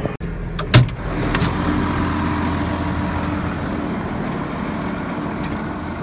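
Case IH Magnum tractor's diesel engine running steadily, with one sharp knock under a second in.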